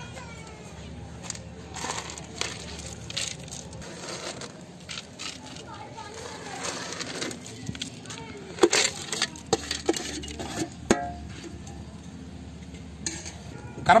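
Light, scattered clicks and clinks of metal as a handful of fried cashews, raisins and onions is scraped off a steel plate and sprinkled over biryani in a large aluminium pot. A few sharper clinks come about two-thirds of the way in, one ringing briefly.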